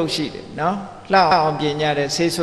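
Only speech: a monk talking in Burmese as he gives a Buddhist dhamma talk, with a short pause near the middle.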